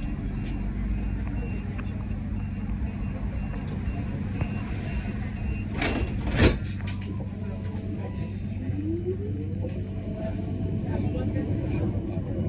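Inside a Siemens Combino NF12B tram: a steady low electrical hum, a sharp clunk about six seconds in, then a rising whine from the traction drive as the tram pulls away from the stop.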